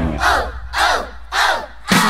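A group of voices shouting 'Oh!' about five times, each call swooping down in pitch, over a low held bass note while the rest of the band drops out: a breakdown in an upbeat pop worship song.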